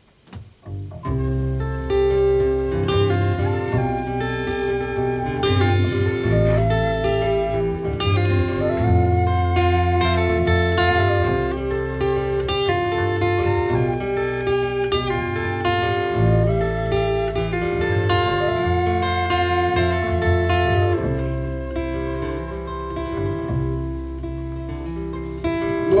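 Live acoustic band playing an instrumental introduction: strummed acoustic guitar and plucked double bass, with a held melody line over the top, starting about a second in.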